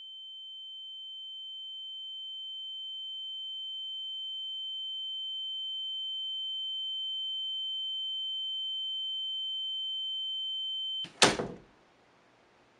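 A steady high-pitched electronic ringing tone, the film sound effect of ringing ears after a crash, swelling slowly louder and then cutting off abruptly about eleven seconds in. It is followed at once by two sharp knocks on a door, the first much louder.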